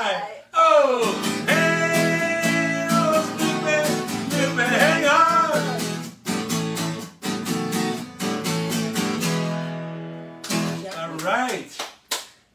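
Acoustic guitar strummed in a steady rhythm of chords.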